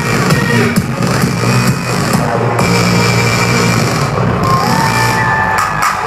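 Loud live electronic music with a steady beat, played through a festival stage's line-array PA speakers and heard from among the crowd.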